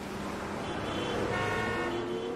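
Sustained electronic tones layered over a steady hiss, the sound design of an animated logo intro. New higher tones come in about halfway through.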